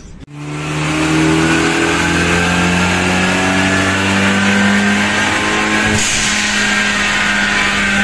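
Hyundai Genesis Coupé 2.0T's turbocharged four-cylinder engine pulling under load on a chassis dynamometer. Its pitch climbs slowly, then levels off about six seconds in as a high hiss joins.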